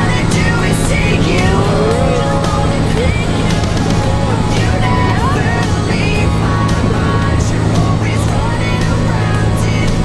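Steady drone of a small single-engine propeller airplane's engine heard from inside its cabin during the climb, with people's voices and laughter over it.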